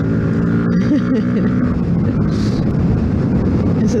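Yamaha MT-125's single-cylinder four-stroke engine running under way. It is steady at first, then wind rushing over the helmet-mounted microphone covers it for the rest of the time.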